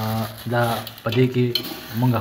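A man speaking over sugar sizzling in hot ghee as it is stirred with a metal spatula in a metal pot. The voice is the loudest sound.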